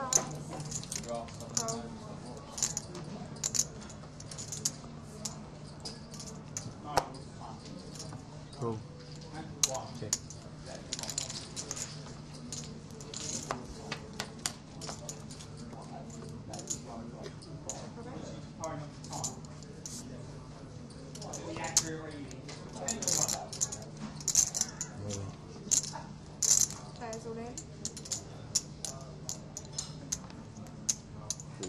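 Poker chips clicking and clattering in frequent short bursts, with cards being handled on the felt and a steady low hum beneath.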